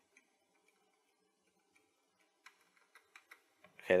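Faint clicking at a computer: a few scattered clicks, then a quick run of several about two and a half seconds in.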